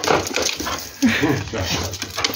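A dog whining in short, rising cries.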